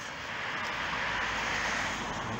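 A road vehicle passing close by, its tyre and engine noise swelling to a peak late on and then starting to fade.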